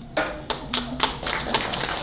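A small audience applauding at the close of a talk: scattered claps at first, filling in to steady applause by the end.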